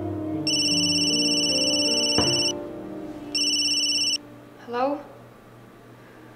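Mobile phone ringing with a high electronic trill: one ring of about two seconds, then a second, shorter ring that cuts off as the call is answered. A single knock comes about two seconds in.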